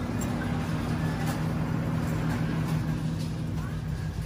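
Steady low hum and rumble of supermarket background noise, with faint distant voices.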